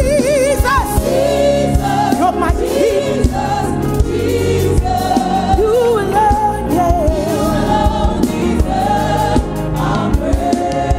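Gospel choir singing a praise song with wavering, held notes over instrumental accompaniment with a steady beat.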